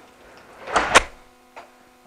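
A door swung shut, ending in a sharp latch click about a second in.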